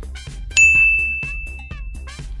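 A bright, bell-like ding sound effect strikes about half a second in and rings out on one high note, fading slowly, over light background music with a steady beat.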